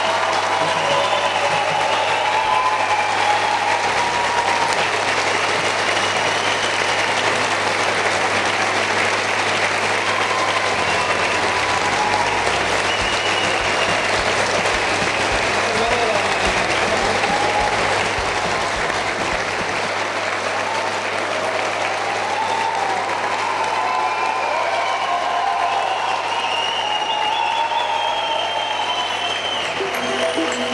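Large audience applauding steadily and at length, with voices calling out over the clapping.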